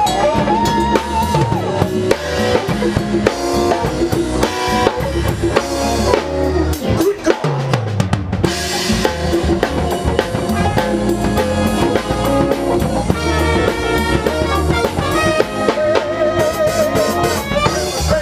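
Live band playing an instrumental passage, led by drum kit with congas, keyboard and bass. The band breaks off briefly about seven seconds in.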